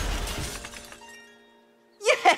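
Cartoon sound effect: a glassy, shimmering crash that rings out with bright sustained tones and fades away within about a second and a half.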